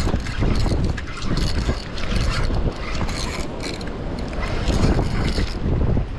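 Wind buffeting the microphone, with short bursts of mechanical rattling and clicking from a fishing reel being cranked as a redfish is brought in.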